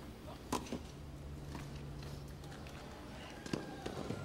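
Tennis rally on a hard court: the ball is struck by the rackets with sharp pops about half a second in and again about three and a half seconds in, over faint crowd and court ambience.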